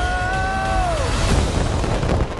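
Dense film-trailer soundtrack: score music over a heavy low rumble of action effects. A long held high note slides downward and fades out about halfway through.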